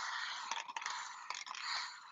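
Hand-held plastic spray bottle misting water onto freshly applied metallic paint, a steady hiss with a few faint trigger clicks; the water wets the sheer gold paint so it runs.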